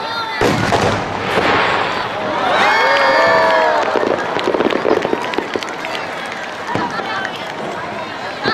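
The delayed boom of an aerial firework shell bursting, a single sharp report about half a second in, followed a few seconds later by a run of quick crackles and another report near the end. Spectators' voices rise over it.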